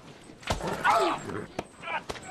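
Fight sounds from a film: a thump about half a second in, then a short strained cry, and another sharp knock near the end.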